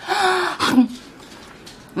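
A woman's loud, breathy, open-mouthed 'haaa' with a faint voice under it for about half a second, then a short low 'mm'.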